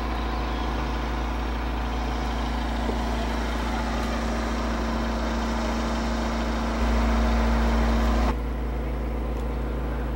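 Steady engine hum with a low drone and a held tone underneath. About seven seconds in it grows louder, then drops off abruptly about a second and a half later.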